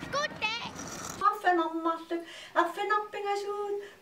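Speech only: a young child's high voice calling out for about a second, then a woman talking in a small room.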